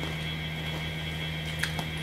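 Steady background hum with a fainter high whine and low room noise, without speech. A single faint click comes near the end.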